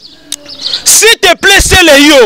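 Faint high bird chirps in the quiet first second, then a man's loud voice talking close to the microphone from about a second in.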